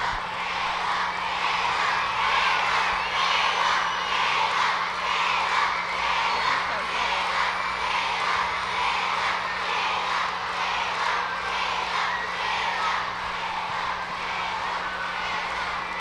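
A crowd of schoolchildren applauding and cheering, a dense, steady mass of clapping and voices lasting throughout.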